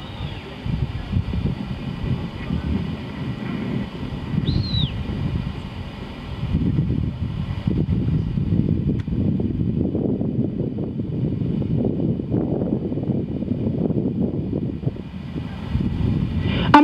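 Wind buffeting the microphone outdoors: a low, uneven rumble that grows somewhat louder after about six seconds, with one faint high chirp about four and a half seconds in.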